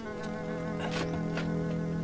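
Sustained low notes of a film score, with a few short scraping crunches of a shovel digging into dry, stony soil.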